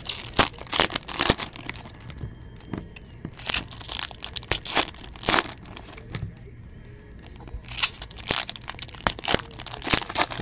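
Foil baseball-card pack wrappers being torn open and crinkled by hand, in irregular bursts of crackling and rustling that come in three bunches.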